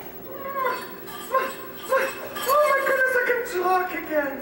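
Wordless, muffled vocal sounds from an actor: a run of short calls that slide up and down in pitch, growing louder and longer in the second half.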